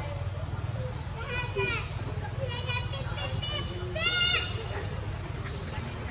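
Baby macaque giving three shrill squeals that rise and fall in pitch, spaced about a second apart, the last and loudest past the middle.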